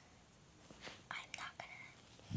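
A girl whispering softly and close to the microphone, in a few faint breathy words in the second half.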